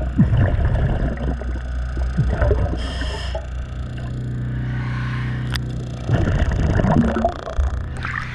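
Underwater sound beside a boat hull: a diver's bubbles gurgling and crackling over a steady low hum, with a brief hiss about three seconds in.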